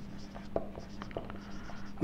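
Marker pen writing on a whiteboard: a run of short, faint strokes and ticks as letters are written, over a faint steady hum.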